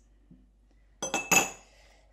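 A small metal spoon clinking twice against a hard surface as it is set down, about a third of a second apart, the second clink louder and briefly ringing.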